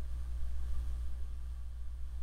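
A steady low hum with faint room tone, and no distinct events.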